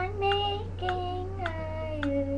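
A young girl singing unaccompanied in long held notes. A steady ticking a little under twice a second and a low hum run behind her.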